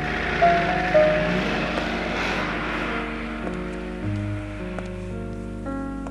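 Background film-score music of held keyboard chords that change step by step. A swell of noise rises and fades under it in the first half.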